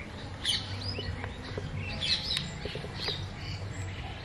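Several birds calling around a pond: short chirps and squawks, sharpest about half a second in and again around two seconds in, over a steady low rumble.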